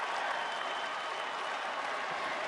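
A large crowd applauding steadily: dense, continuous clapping.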